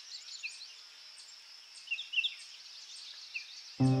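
Small birds chirping in short bursts over a steady high-pitched hiss of nature ambience, with a few chirps about two seconds in. Music starts suddenly near the end.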